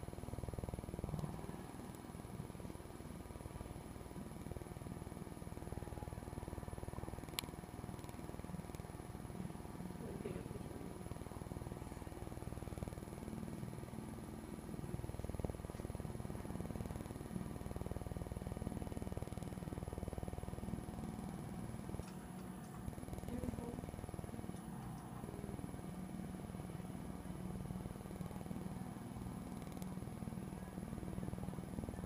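Steady low machine hum with a thin high whine over it, and a single sharp click about seven seconds in.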